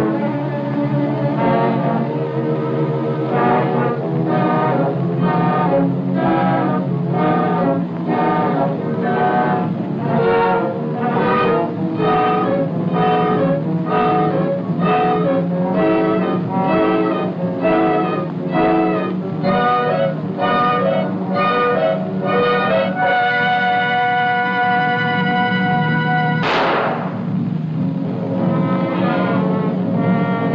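Orchestral film score with short chords struck in an even rhythm, somewhat under two a second. Near the end it moves to a held chord, cut across by a single crash that rings out.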